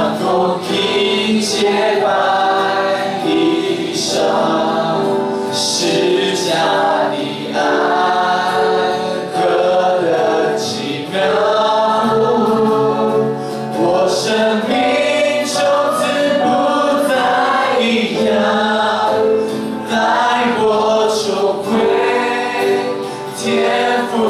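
A group singing a Mandarin worship song together, led by a male worship leader singing into a microphone, in continuous phrases with short breaks between lines.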